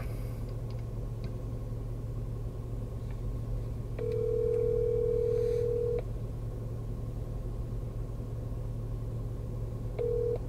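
Phone ringback tone of an outgoing call: one steady two-second ring about four seconds in, with the next ring just starting at the end. Under it runs a low steady car-cabin hum.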